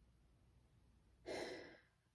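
A woman sighs once, a single breathy exhale of about half a second that starts strong and fades. Before it there is near silence.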